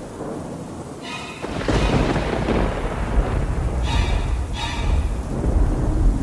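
Thunder rolls in about a second and a half in and keeps rumbling, mixed with a sparse music bed of a few short pitched notes.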